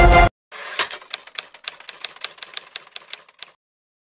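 Background music cuts off abruptly, then a typewriter sound effect: a quick, uneven run of sharp key clicks for about three seconds that stops suddenly.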